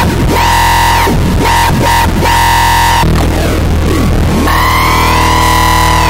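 Arturia MicroBrute analog synthesizer playing a low, gritty, heavily distorted and bitcrushed tone through the Caramel iPad effects app. Its upper tones are chopped rhythmically and glide up and down as the crush setting is moved. The texture changes about three seconds in, and a rising glide enters near the end.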